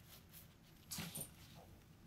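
Faint sounds of a cat playing with a tinsel toy at a fabric cat tunnel: otherwise quiet, with a brief burst about a second in and a smaller one just after.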